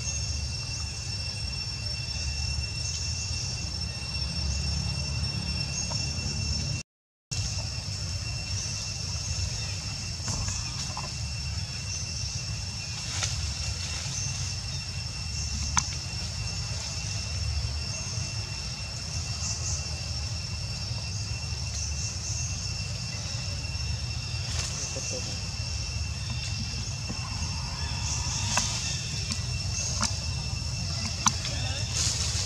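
Outdoor ambience: a steady high-pitched two-tone drone over a low rumble, with a few light clicks and a brief gap of silence about seven seconds in.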